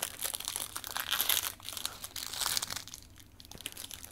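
Foil trading-card pack wrapper being opened by hand, crinkling and crackling, with the rustle thinning out near the end.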